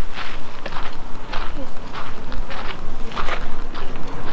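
Footsteps on gravelly dirt, a step about every half second, over a steady rushing noise.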